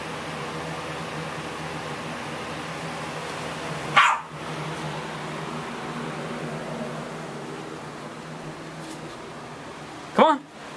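A small dog gives one short, high bark about four seconds in, over a steady low hum.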